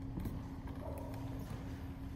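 Footsteps across the sanctuary floor: a few soft, irregular clicks of a priest's shoes as he walks to the ambo, over a steady low electrical hum.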